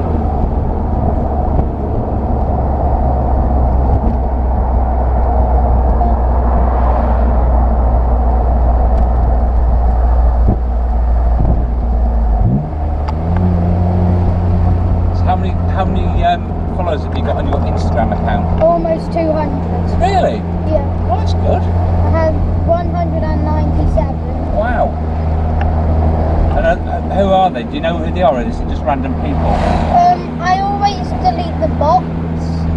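BMW M Roadster's straight-six engine running steadily under way, heard from the open-top cockpit. About twelve seconds in, the engine note rises quickly and then holds at a higher steady pitch. Voices come in over it in the second half.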